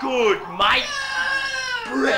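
A performer's voice: a short falling cry, then one long high wailing note held for about a second before it drops away.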